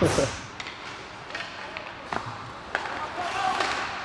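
Ice hockey game sounds in a rink's hall: a steady hiss of arena noise with about five sharp clacks of sticks on the puck spread through it, and faint distant voices near the end.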